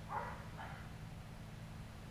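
Steady low background hum, with two short faint sounds about half a second apart near the start.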